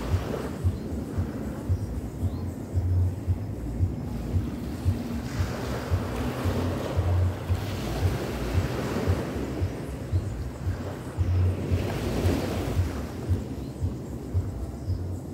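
Small waves breaking on a sandy shore and washing up the sand, the surf swelling and easing, louder through the middle and again near the end. Wind buffets the microphone in low rumbles.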